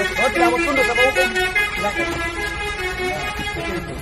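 Indistinct men's voices talking over one another, over a steady drone of several held tones.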